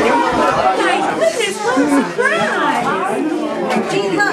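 Several voices, children and adults, talking over one another with laughter.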